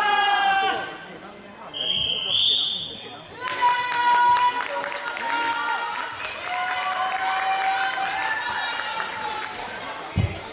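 People's voices in a large gym hall, including long, held shouts and calls.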